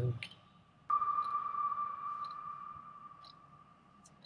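A steady high electronic tone, the closing sound of the teaser video being played. It starts suddenly about a second in and fades away over about three seconds.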